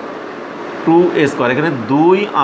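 A man speaking, starting about a second in, over a steady background hiss.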